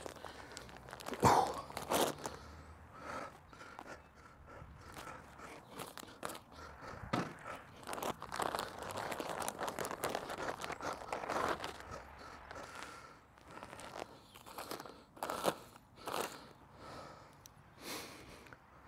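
A 20 kg plastic sack of compost crinkling and rustling as it is lifted and tipped, with the compost pouring out onto the bed, loudest in the middle.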